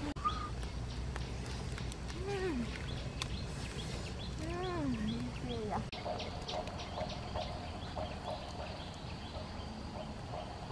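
Two drawn-out animal calls, each rising then falling in pitch, about two and five seconds in, followed by quick repeated chirps.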